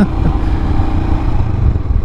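Royal Enfield Himalayan's air-cooled single-cylinder engine running steadily under way, heard from the rider's seat.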